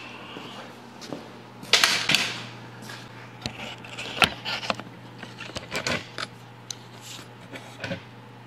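Handling noise as the camera is moved and set up: scattered clicks and knocks, with a louder scrape or rustle about two seconds in, over a steady low hum.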